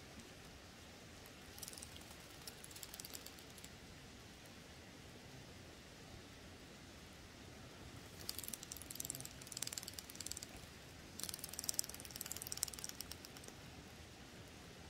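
Faint crackling rustle of dry fallen leaves and pine needles, coming in three short spells of fine rapid crackles.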